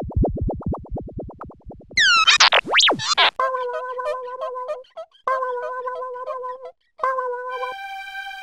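Synthesized cartoon sound effects: a fast run of low, boing-like pulses for about two seconds, then a few steeply falling whistling sweeps, then a warbling electronic bleep pattern in three short phrases, with a sustained tone starting near the end.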